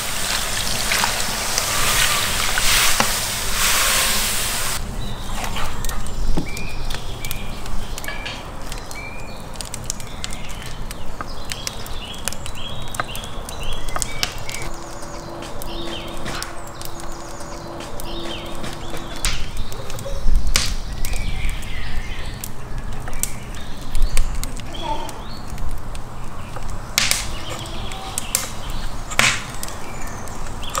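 Water pouring from a glass jug into a cast-iron kazan over soaking pieces of beef heart, until about five seconds in. After that, birds chirp repeatedly while a knife taps and cuts through raw fat on a wooden chopping board.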